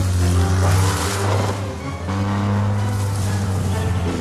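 Motorcycle engine running hard in a film soundtrack, mixed with orchestral music, with a gritty rush of noise in the first second and a half and an abrupt cut to a new engine sound about two seconds in.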